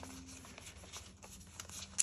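Faint rustling of polymer banknotes being leafed through and sorted by hand, with small irregular crinkles and a sharper snap at the end.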